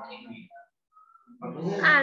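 Speech in Thai over an online-lesson call that breaks off about half a second in and starts again near the end. A short pause in between holds two faint brief tones.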